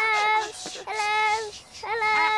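Two high-pitched, childlike voices singing out wordless held notes, one at the start and another about a second later, each lasting about half a second.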